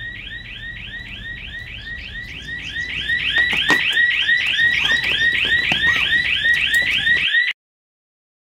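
Electronic alarm sounding a rapid rising whoop, about four times a second. It gets louder a few seconds in and cuts off suddenly near the end.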